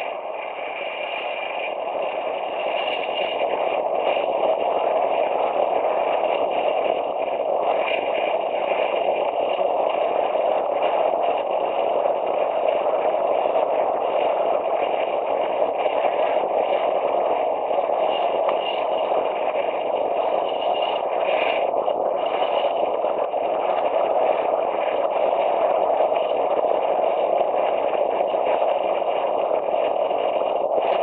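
Wind rushing over the camera microphone, with tyre and road noise from a bicycle descending fast downhill on asphalt. The noise grows louder over the first few seconds as speed builds, then holds steady.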